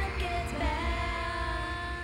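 Live pop-rock concert music: a female lead vocalist sings into a microphone over a band with a heavy bass beat, holding one long note through the second half.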